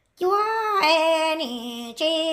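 A woman singing Hmong kwv txhiaj (traditional sung poetry) unaccompanied. After a brief silence she comes in on a high held note, then holds long notes that step down in pitch twice.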